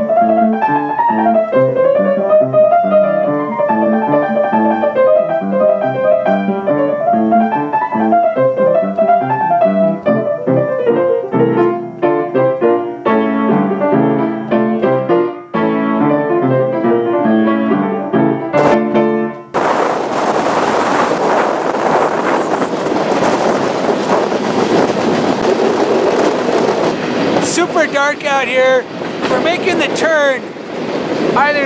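Piano-led music that cuts off suddenly about two-thirds of the way in, giving way to loud, steady wind rush and rumble recorded from an open freight car in motion. Near the end, a few wavering high squeals sound over the rush.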